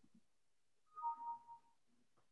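Brief electronic two-note tone about a second in, the higher note first and the lower one held a little longer, over a faint low murmur.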